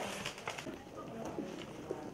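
Large green wrapping leaves being handled and folded over a metal tray, with a sharp click at the start and light crinkling and tapping after it.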